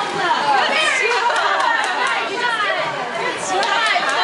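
Many voices chattering over one another, adults and high-pitched young children's voices mixed, with no single clear speaker.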